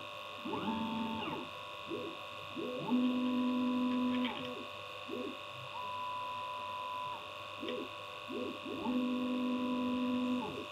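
Mecpow X4 Pro diode laser engraver at work: its stepper motors whine in short moves of about a second each, the pitch rising as the head speeds up and falling as it slows, over the steady hum of the machine's fans.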